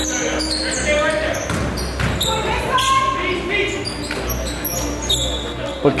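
Live court sound of an indoor basketball game in a gymnasium: scattered players' voices and a ball bouncing, with the hall's echo.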